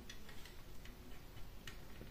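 Faint handling clicks and ticks of an LED grow-light bulb's housing being turned over in the hands, with one sharper click near the end.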